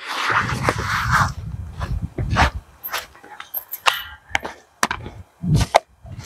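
Footsteps crunching and rustling through dry fallen leaves, loudest in the first couple of seconds, then scattered sharp knocks and clicks as the camera is handled close to the microphone.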